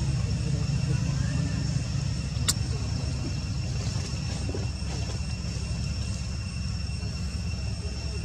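Outdoor background noise: a steady low rumble under constant high-pitched buzzing tones, with one sharp click about two and a half seconds in.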